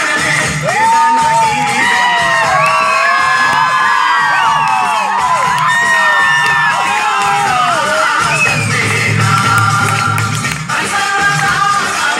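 Dance music with a steady beat played over loudspeakers, with a crowd cheering over it: many overlapping rising and falling shouts from about a second in until about eight seconds in, after which the music carries on alone.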